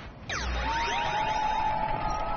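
Game-show sound effect as the host presses the big red button to launch the bonus wheel: a sudden falling sweep about a third of a second in, then steady held tones.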